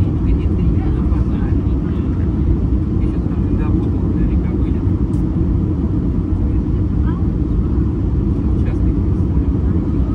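Airbus A320 cabin noise on final approach: a steady low rumble of jet engines and airflow, heard from a window seat over the wing.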